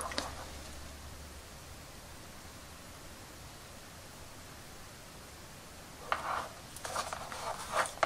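Mostly quiet room tone, then in the last two seconds a few short, soft scratchy rustles from fine paintbrush work touching up a plastic action figure's hair.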